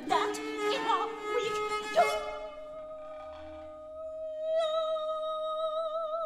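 Chamber opera music. A busy passage of several instrumental and vocal lines gives way, about two seconds in, to one long held high note that swells with vibrato partway through, over a steady low sustained note.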